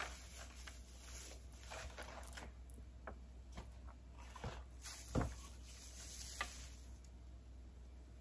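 Faint rustling of shredded gift-bag filler being handled and stuffed into a paper gift bag, with a few soft knocks against the bag, the clearest about five seconds in.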